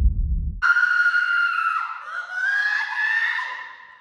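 A long, high-pitched scream, held for about three seconds from just under a second in, dipping briefly in pitch midway and rising again before it fades.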